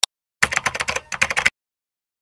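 Typing sound effect: a single click, then a quick run of keyboard key clicks lasting about a second, with a short break in the middle.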